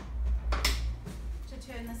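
Clicks and knocks of a Mutsy Igo stroller seat unit being unlatched and lifted off its frame to turn it around: a sharp click at the start and another about half a second in, over low handling rumble.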